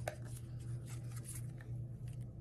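Paper sticker sheets rustling and scraping against the cardboard box as they are lifted out by hand: short crisp rustles, the sharpest right at the start and a few more about a second in, over a steady low hum.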